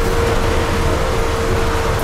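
Electric trolleybus running through a narrow concrete tunnel: a steady rumble of the moving vehicle with one steady high tone held over it.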